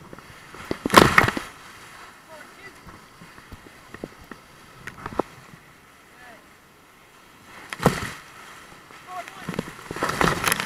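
Whitewater rapids rushing against an inflatable raft, with two loud splashes as waves break over the boat, one about a second in and one near the end.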